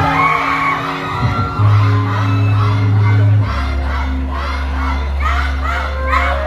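Live concert music with deep, held bass notes, the bass stepping lower about three and a half seconds in, under a crowd screaming and cheering, heard from within the audience in a large hall.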